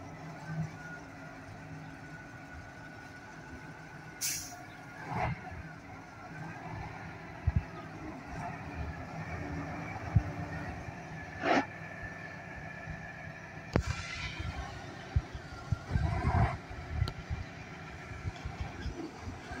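Ural 6x6 military truck driving slowly away at low revs, its engine a steady low rumble. A short sharp hiss of air from its air brakes comes about four seconds in, another near fourteen seconds, with a few knocks in between.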